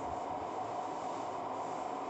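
Steady background hum with a faint constant tone running through it, unchanging and without any separate events.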